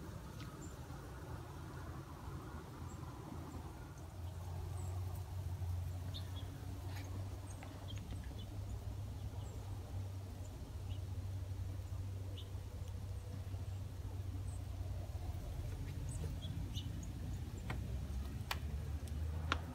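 Outdoor ambience with scattered short, high bird chirps over a steady low rumble.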